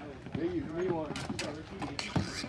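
Players' voices calling out on a ball hockey rink, with a few sharp clacks of sticks and the ball on the court, the loudest coming a little past the middle.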